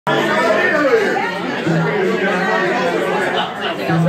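Indistinct chatter of several people talking in a large, echoing room.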